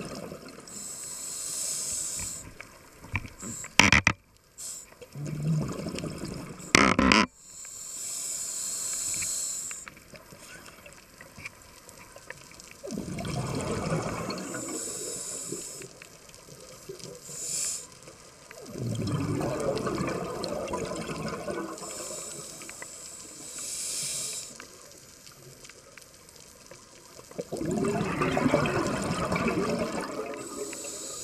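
Scuba breathing through a regulator underwater: hissing inhalations alternating with rumbling gushes of exhaled bubbles, repeating every few seconds. Two sharp knocks come in the first several seconds.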